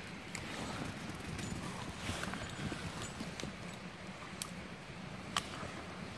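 Dogs and a walker moving about on a dirt woodland trail: footsteps and rustling in the undergrowth, with a few sharp clicks.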